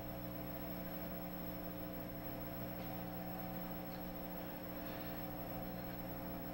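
Steady electrical mains hum: several low steady tones under a faint hiss, holding an even level.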